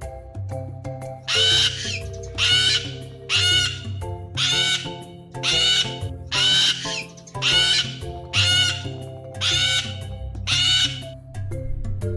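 Cockatoo screeching: a run of about ten loud, harsh squawks, roughly one a second, starting about a second in and stopping shortly before the end. Light mallet-percussion music plays underneath.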